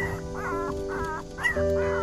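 Very young puppies whining in a run of short, high, rising-and-falling cries, several a second: hungry cries. Background music with sustained notes plays underneath.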